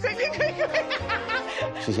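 A woman giggling in quick, short bursts over background music with a steady bass line.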